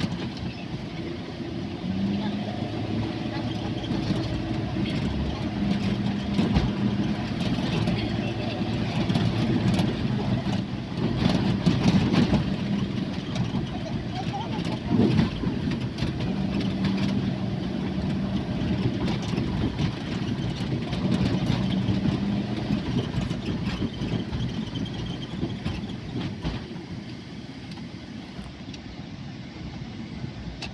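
Steady engine and road noise of a van on the move, heard from inside the cabin.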